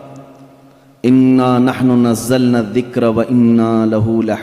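A man chanting Arabic Quranic recitation through a microphone, in long held melodic notes. The chant begins about a second in, after a fading echo of the previous phrase.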